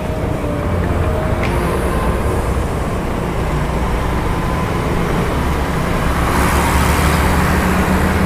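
On-board sound of a Yamaha Mio i 125 scooter cruising in traffic: a steady engine hum under wind and road noise. The noise swells somewhat from about six seconds in.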